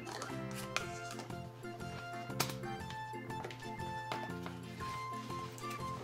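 Instrumental background music with steady held notes, with two sharp clicks of plastic Play-Doh tubs being handled, about a second in and again a little before the halfway point.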